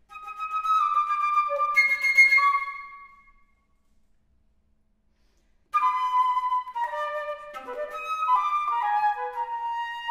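Concert flute playing: a phrase of a few sustained notes that fades out after about three seconds, a pause of about two seconds, then a quicker run of notes that settles on a long held note near the end.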